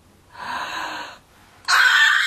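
A woman's breathy intake of air, then a loud, high-pitched excited gasp of delight starting near the end.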